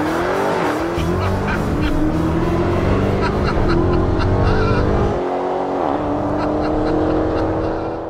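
Dodge Challenger's engine at full throttle accelerating hard down a drag strip. The engine note climbs, then dips at each of about three gear changes.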